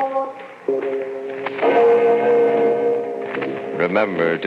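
Organ music in long held chords: a brief fade about half a second in, then new chords entering, with a fuller swell a second later that is sustained.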